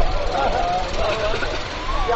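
A man's voice, drawn out and wavering, with a steady low rumble beneath it.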